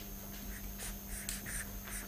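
Faint scratching of someone writing by hand, a few short strokes, over a steady low room hum.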